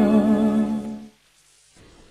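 An old Hindi film song ends on a long held note that fades out about a second in. Near silence with a faint hiss follows.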